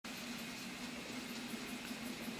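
Steady, faint whir of a Prusa MK3 3D printer's cooling fan running while the machine sits powered and idle, with a low hum under it.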